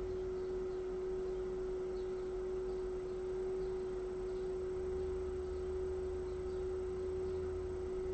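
A single steady pure tone, held unchanged at one pitch without fading, like a sustained sine or tuning-fork tone, over a faint low hum.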